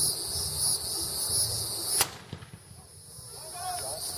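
A single black-powder cannon shot about two seconds in, a short sharp crack that the camera records much quieter than it really was. Right after it the background buzz and voices drop away and slowly come back.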